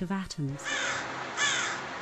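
A crow cawing twice, the calls about two-thirds of a second apart, after a brief voice at the start.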